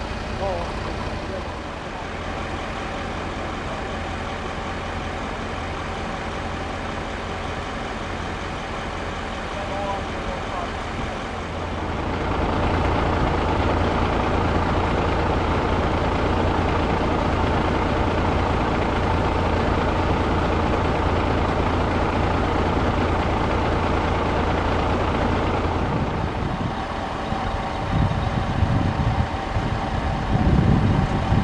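Idling engines of an ambulance and other emergency vehicles: a steady low hum that gets louder about twelve seconds in, with uneven low rumbling near the end.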